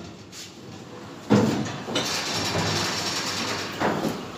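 Hydraulic single-die paper plate press working: a sudden clunk a little over a second in, then a steady mechanical noise, and another clunk just before the end.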